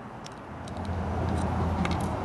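A low rumble of a vehicle engine in the background, building about half a second in and then holding steady, with a few faint clicks as the small metal parts of a carburetor slide (its needle spring and clip) are handled and set down on a table.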